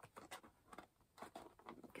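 Faint scattered rustles and small taps of cardboard being handled, a product box being pulled out of its cardboard compartment.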